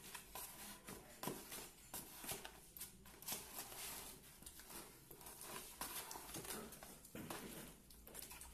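Wet cement mix being stirred and worked by hand in a plastic bucket: faint, irregular scrapes, squelches and small knocks against the bucket.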